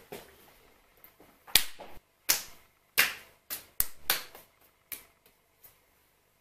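A series of sharp hand slaps, about eight, irregularly spaced, each dying away quickly.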